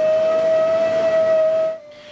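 Large steel hydraulic-cylinder part being finished with diamond honing stones on a machine: a loud, steady whining tone with fainter overtones over a hiss, cutting off shortly before the end.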